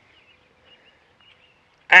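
Quiet outdoor background with a few faint, distant high chirps; a man starts talking near the end.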